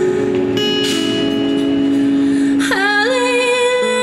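A woman singing with her own guitar accompaniment. Guitar notes ring on through the first part, with a short breath about a second in, then her voice comes in near the end with an upward swoop into long held notes.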